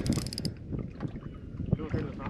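Wind on the microphone and water lapping at a boat's hull, with a quick run of faint clicks in the first half second.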